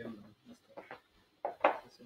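Scattered snatches of speech from people in a room, with short quiet gaps between them.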